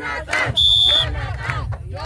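A group of people shouting and cheering, with a single short, high, steady tone about half a second in that lasts about half a second.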